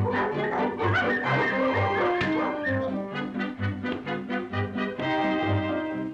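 Brass-led orchestral cartoon score playing a bouncy tune over a steady oom-pah bass of about two beats a second, ending on a held chord.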